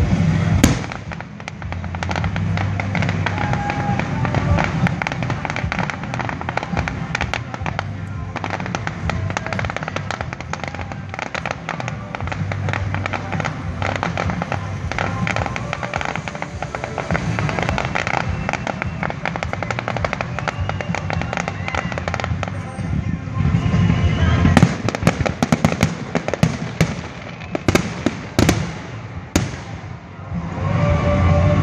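Aerial fireworks display: a steady run of shell bursts, booms and crackling, thickening into a rapid barrage of loud bangs over the last six seconds.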